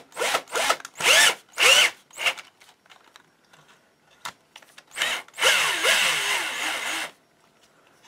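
12 V cordless drill motor, running from a 12 V PC switching power supply through a dummy battery pack, spun in short trigger bursts: four quick spin-ups and spin-downs in the first two seconds, then a longer run of about two seconds near the end. The pitch rises and falls with each burst.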